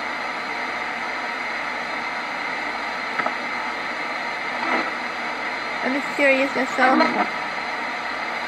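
Portable radio used as a spirit box, giving a steady hiss of static with brief faint snatches of sound about three and five seconds in.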